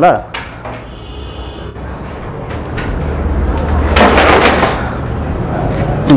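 A bent rattan (cane) furniture frame being picked up and handled, with a few knocks and a scraping rush. The rush builds to its loudest about four seconds in.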